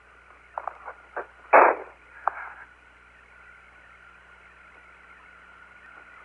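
Hiss of the Apollo air-to-ground radio link, with nothing above a fairly low cutoff. A few faint clicks and a short, loud burst of noise come about a second and a half in, then the hiss settles to a steady level with a faint steady tone running through it.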